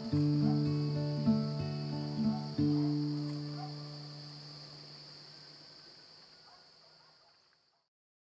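Closing background music: sustained low chords with a few plucked notes, changing chord twice, over a steady high insect-like chirring, all fading out to silence about seven seconds in.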